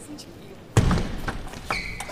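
Table tennis rally: a celluloid-plastic ball clicking off rackets and the table in quick sharp ticks, with a louder thump about three-quarters of a second in and a brief high squeak near the end.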